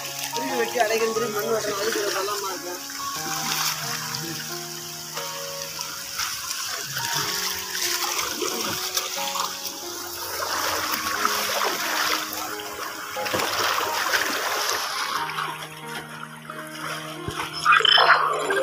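Background music with slow, held notes, over water splashing and running as stored water is let out of a channel.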